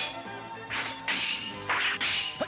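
Cartoon sword-fight sound effects: steel blades clashing, about four quick metallic clangs, some with a brief ring, over background music.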